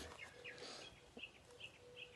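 Several faint, short bird chirps scattered through near silence.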